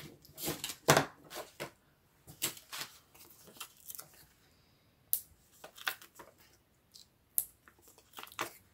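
Irregular short rustles and light clicks of paper and 3D foam adhesive dots being handled as the dots are stuck onto the back of a vellum paper star.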